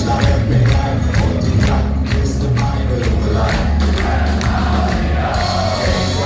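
Live ska-punk band with electric guitars, bass and drums playing loud with a steady beat, in a passage without vocals, recorded from within the audience.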